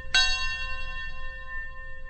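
A bell struck once just after the start, ringing on with several steady, overlapping tones.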